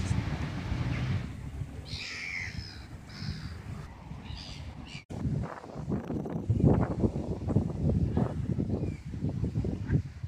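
Outdoor ambience with a few short bird chirps in the first half. After a sudden cut about halfway, it turns to irregular low rumbling buffets on the microphone.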